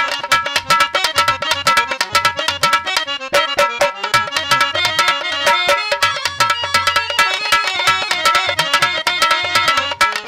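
Dholak and harmonium playing Bhojpuri folk music: a quick, dense run of hand-drum strokes under the harmonium's steady reedy chords, thinning briefly about three seconds in.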